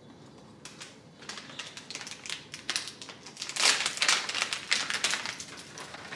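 Hands rummaging among bottles and packages in a kitchen cabinet: a quick run of clicks, knocks and rustles, loudest a little past the middle.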